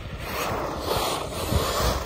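Arrma Talion XL RC car creeping along a tarmac road: a steady rushing noise from its tyres and drivetrain, with low buffets of wind on the microphone in the second half.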